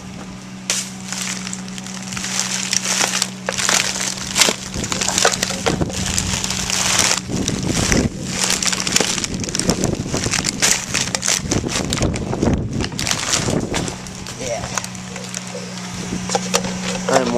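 Full plastic garbage bags crackling and crunching as a foot stomps them down into a wheeled trash bin, in repeated irregular bursts.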